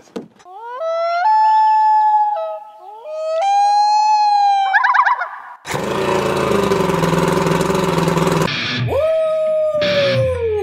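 Outboard motor running loudly for about three seconds, starting and cutting off abruptly. Before it there is a high wailing tone that rises and holds twice and ends in a quick warble. Near the end a falling wail follows.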